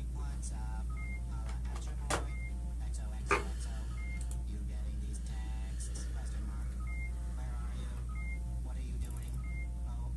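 Steady low hum with faint, indistinct voices underneath. Two sharp clicks stand out, about two and three seconds in.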